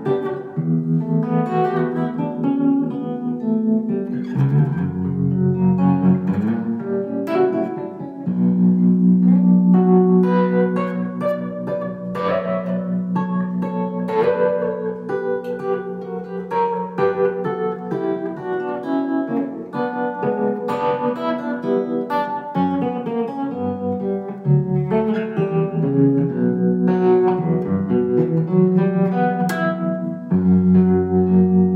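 Eastwood baritone electric guitar played solo in a baroque style, with quick runs of picked notes over long held low notes.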